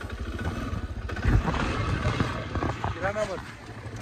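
Quad bike (ATV) engine running at low revs as the ride starts slowly over gravel, with one loud thump about a second in.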